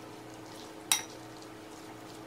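A metal fork stirring a mashed chickpea and mayo mixture in a ceramic bowl, with one sharp ringing clink of the fork against the bowl about a second in, over a faint steady hum.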